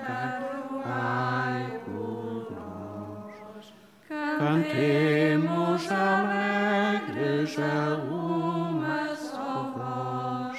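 Voices singing a slow hymn in long held notes, with a short break about four seconds in before the next phrase.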